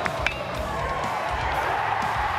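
A college baseball player's metal bat hitting the ball, one sharp crack about a quarter second in, over stadium crowd noise and background music.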